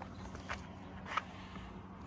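Faint scraping handling sounds, two brief scrapes, as a thin wire is worked behind a car badge to cut through its adhesive.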